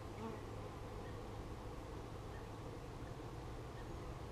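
Honey bees buzzing in a steady, even hum around an opened hive.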